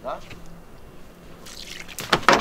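A rope swishing through the air as it is swung, a short hissing whoosh that builds over the last half second.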